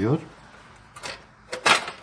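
Removable non-stick grill plate of a Vestel Şölen T3500 contact grill released and lifted out: a light click about a second in, then a louder sharp metallic clack near the end.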